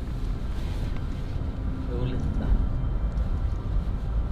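Car cabin road noise: a steady low rumble of tyres and engine, heard from inside the car as it drives slowly over a rough, muddy dirt road.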